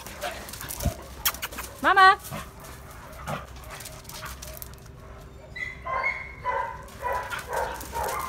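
Dog making short whines and yelps, mixed with a person's high-pitched, coaxing calls.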